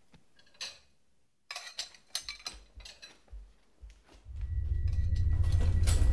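Dishes and cutlery being handled, a scatter of light clinks and knocks. About four seconds in, a loud low drone swells up and holds.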